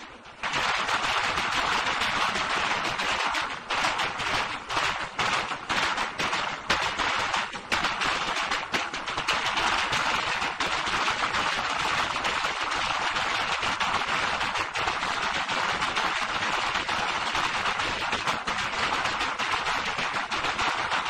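Drums of a Yemeni bara' dance beaten in a fast, dense roll of sharp strokes. It starts suddenly just after the start.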